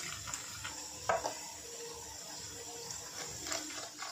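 Water poured from a plastic cup into a steel bowl of maida and cornflour, then a plastic spoon stirring it into a thin batter against the steel bowl. Faint throughout, with a light knock about a second in.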